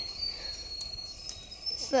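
A high, thin, steady insect call, a single sustained note that steps up slightly in pitch near the end.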